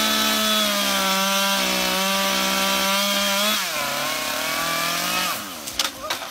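Chainsaw running at full throttle with a steady high whine. About three and a half seconds in it drops to a lower pitch, then dies away after about five seconds. A few sharp cracks follow near the end.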